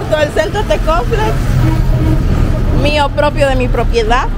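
Street traffic: a vehicle engine running steadily nearby, with voices at the start and again near the end.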